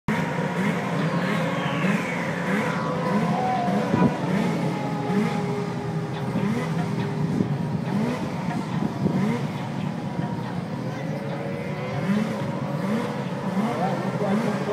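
Racing snowmobile engines running and revving in repeated short rises in pitch, with a falling whine in the first few seconds and crowd chatter underneath.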